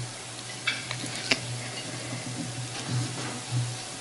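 Room tone in a hall: a steady low hum with a faint hiss, and a few soft clinks in the first second and a half.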